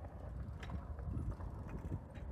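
BMX bike on a concrete skatepark floor: a low rumble with a few faint, scattered clicks as the bike is handled and set rolling.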